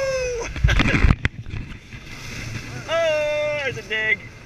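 A man whooping for joy in long held cries, one trailing off just after the start and another about three seconds in, over the rushing wind and water of a sailing catamaran at speed. A loud low rumble of wind buffeting the microphone comes about a second in.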